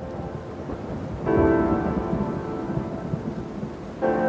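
Background music whose pitched tones sit under a low, rumbling noise, swelling louder about a second in.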